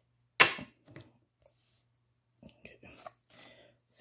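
Baseball cards being handled: a sharp tap or snap about half a second in, then softer clicks and card-on-card rustling as cards are slid from the front of the stack to the back.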